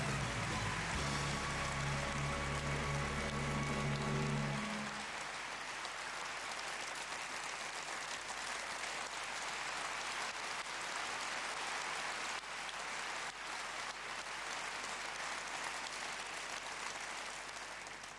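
Studio audience applauding steadily, thinning toward the end. For about the first five seconds a held musical chord plays over the clapping, then stops.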